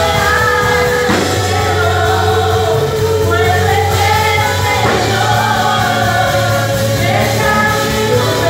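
Live Christian worship band: several singers singing a held, flowing melody together over electric guitars, bass and drums.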